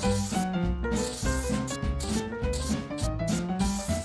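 Felt-tip marker rubbing and scratching across paper as letters are written, over background music with a melody and bass line.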